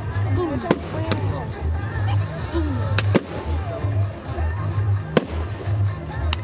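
Fireworks going off in the open: several sharp bangs and cracks a second or two apart, the loudest about five seconds in.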